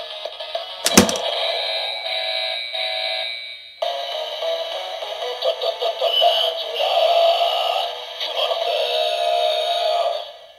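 Electronic sound effects from the DX Kumonoslayer transformation toy's speaker: a repeating standby tune, a sharp plastic clack about a second in, then from about four seconds a synthesized voice calling "ta-ta-ta-tarantula kumonos!" over electronic music.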